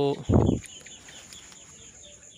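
A short, loud burst of low noise about a third of a second in, then faint bird calls chirping in the background.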